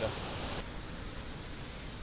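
Steady rush of a rain-swollen river pouring over a weir, cut off suddenly about half a second in, followed by a softer, duller steady outdoor hiss.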